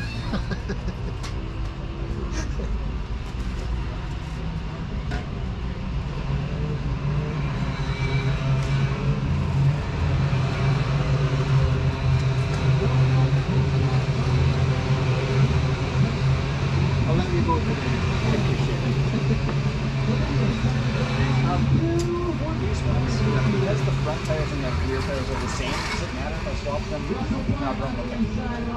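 Steady low engine or motor hum that grows louder about six seconds in and eases off near the end, under faint background voices.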